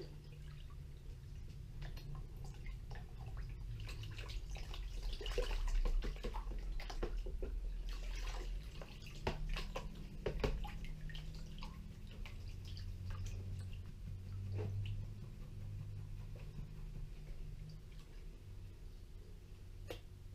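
Water sloshing, splashing and dripping in a plastic tub as a plastic gold pan of paydirt is swirled, shaken and tipped under the water, washing the lighter material out of the pan. The splashes come irregularly throughout, with the busiest stretch between about four and eleven seconds in.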